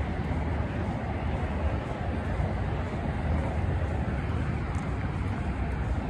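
Steady low outdoor rumble with no distinct events: wind on the phone's microphone over the hum of distant road traffic.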